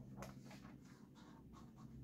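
Faint scraping of an ultrasonic probe sliding over a welded steel plate, with a short scratch just after the start and a few lighter ones after it, over a steady low hum.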